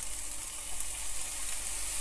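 Egg noodles, onions and bean sprouts sizzling in a hot wok as dark soy sauce is poured over them: a steady frying hiss that grows brighter near the end.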